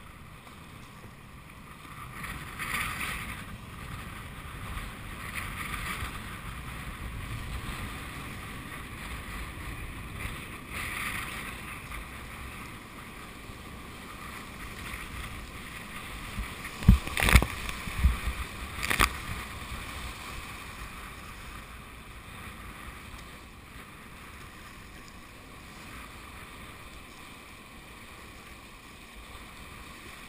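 Steady rush of whitewater on a river running high at about 4000 cfs, heard from a kayak, with swells of splashing as it rides through waves. About two-thirds of the way through comes a quick cluster of loud splashes and knocks as the boat punches through a wave train.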